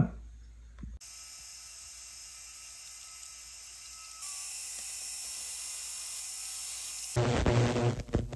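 Rotary tool spinning a small polishing wheel against a sterling silver pendant: a faint, steady high-pitched hiss that gets slightly louder about four seconds in. Near the end a much louder, throbbing hum from the jewelry cleaning tank takes over.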